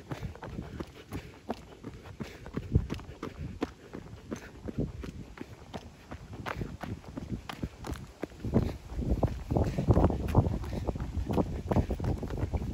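Running footsteps of a jogger on a paved path, an even beat of about two to three strides a second. From about two-thirds of the way in, a louder low rushing noise joins the steps.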